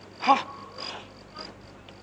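Faint, short, high chirps repeating about twice a second, like insect chirping behind the recording, with one short syllable of a man's voice about a quarter second in.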